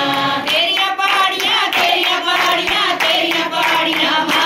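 A group of voices singing a Hindu devotional bhajan together, with hands clapping along in rhythm.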